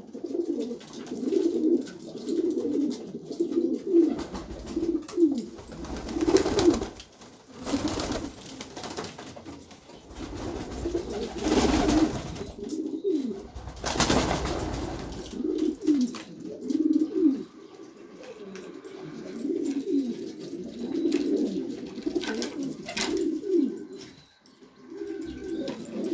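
Domestic pigeons cooing, with repeated low, overlapping coos running on throughout. A few brief rushing noises break in around the middle.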